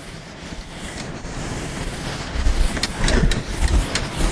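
Rubbing and rustling noise on the microphone from a lecturer moving and working at the board. It grows louder, with heavy low bumps from about two seconds in and a few sharp clicks near the end.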